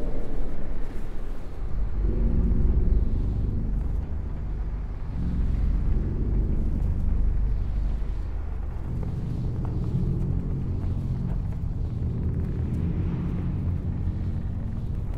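Dark ambient drone: a deep, rumbling low bed with layered low tones that swell in and fade every few seconds.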